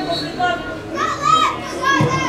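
Raised voices calling and shouting, with the loudest high-pitched calls coming a little after a second in.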